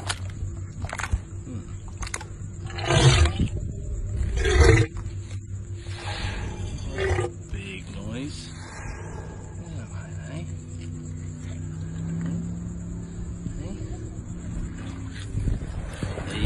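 Saltwater crocodile giving two loud, rough bursts about a second and a half apart, a few seconds in, over a steady low hum.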